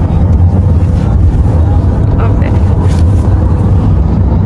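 Steady low rumble of a car heard from inside the cabin, engine and road noise running evenly throughout.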